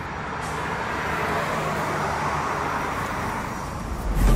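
Two cars passing on a highway: tyre and road noise swells as they approach, peaks about two seconds in, then fades.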